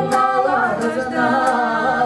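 Two women singing a Russian gypsy-style song together, live, with wavering held notes, over acoustic guitar and cello.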